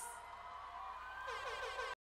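Faint, steady buzzing tone, joined about a second and a quarter in by a faint wavering pitched sound; the audio cuts off just before the end.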